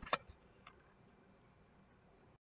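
Near silence: room tone, with a few faint short clicks in the first second.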